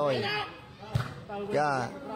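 A man's excited commentary over a crowded ball game, with one sharp thud of a ball being struck about a second in.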